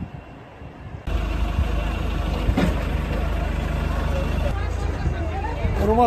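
A steady, low engine hum starts abruptly about a second in, with people talking in the background.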